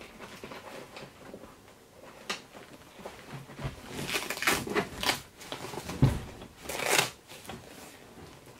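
H&H Thin H elastic pressure bandage being pulled and wrapped around a leg: fabric rustling and brushing in several short spells, with a soft low thump about six seconds in.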